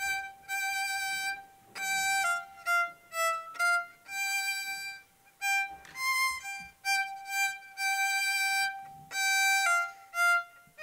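Solo violin playing a slow melody, one held note at a time, in short phrases with brief pauses between them.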